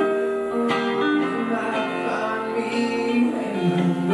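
Acoustic guitar strummed in a steady run of chords, played live.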